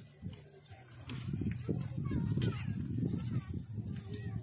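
Indistinct voices, getting louder about a second in, with a few short high chirp-like sounds around the middle.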